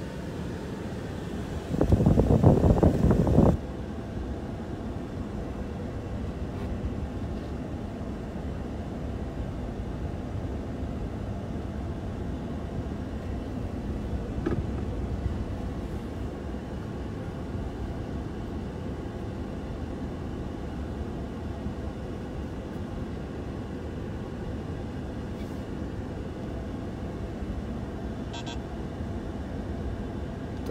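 Steady engine and road noise inside a car. About two seconds in, a loud buzzing sound lasts nearly two seconds, then cuts off abruptly.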